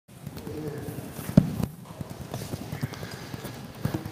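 Room noise of a church congregation settling after a hymn: scattered knocks and shuffling, with one louder thump about a second and a half in and faint murmured voices.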